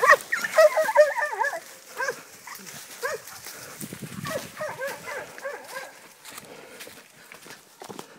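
Catahoula hog dogs barking and yelping in high-pitched bursts: a quick run of yelps in the first second and a half, a few single barks, then another flurry about five seconds in.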